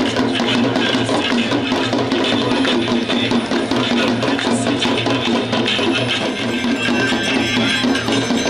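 Devotional aarti music with drums and percussion, loud and continuous, with quick repeated strikes throughout.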